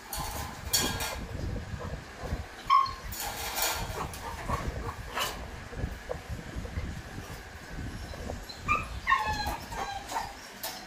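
Macaque calls: a short high call about three seconds in and a run of brief falling calls near the end, over a continuous low rumble with a few sharp knocks.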